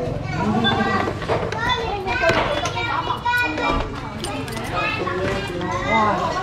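Several people talking at once, some of the voices high-pitched.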